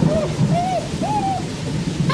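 Steady rain sound effect with a low rumble underneath, over which come three short rising-and-falling calls, about half a second apart.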